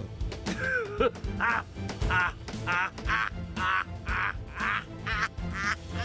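A man shut inside a closed coffin crying out in short, muffled, high-pitched bursts, about two a second, in panic at being buried alive, over dramatic background music, with a couple of dull thumps.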